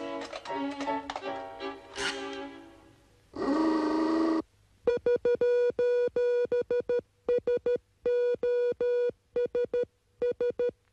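Cartoon music for the first few seconds, then a brief buzzing tone. From about halfway through comes Morse-code-style beeping from a radio transmitter: one steady beep keyed on and off in irregular groups of short and long pulses.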